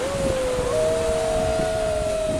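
Two people's voices giving long held calls, the second joining under a second in on a slightly higher note, the two overlapping for about a second.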